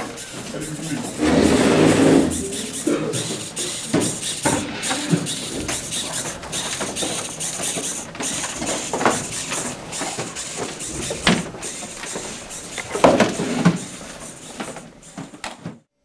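Indistinct voices of several people talking in a room, loudest about a second or two in, over a faint steady high whine that runs throughout.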